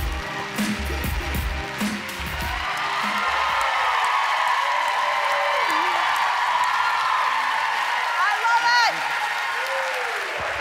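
A hip hop backing beat plays out and stops about two and a half seconds in, under a studio audience's applause and cheering. The applause and cheers carry on steadily, with a brief voice call near the end.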